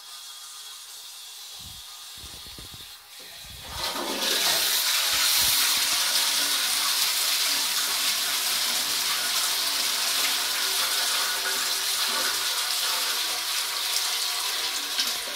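Low-level toilet cistern being flushed: a few low knocks, then about four seconds in water rushes into the pan and keeps running steadily, swirling round the bowl.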